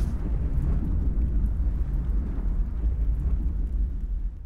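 Deep, steady rumble of an outro logo sound effect, with most of its weight in the low bass.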